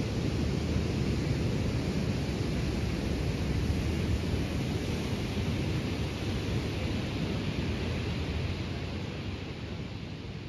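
Ocean surf breaking on a sandy beach: a steady, low rush of noise that slowly fades in the last few seconds.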